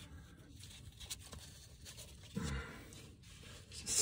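Quiet handling noise: a few faint clicks of gloved hands and parts being worked, and a brief low murmur from a man's voice about two and a half seconds in.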